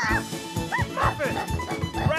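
Cartoon soundtrack: background music under a handful of short, high, yip-like calls from a cartoon dog character.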